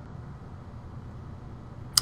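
A pause in speech: low, steady room tone with a faint hiss, and a brief click right at the end as speech resumes.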